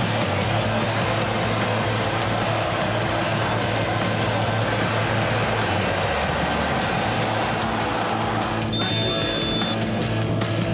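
Background music with a steady beat under an edited highlight montage; the beat thins out about two-thirds of the way through and a high held note comes in near the end.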